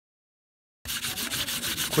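Steel-wool dish scourer rubbed rapidly over a black-sprayed embossed metal foil sheet, scratching the dried spray paint off the raised parts of the relief. The scratchy rubbing starts abruptly a little under a second in and keeps going.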